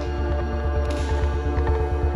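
Background music: sustained tones over an evenly repeating, throbbing low bass pulse that grows stronger toward the end, with a brief hiss about halfway through.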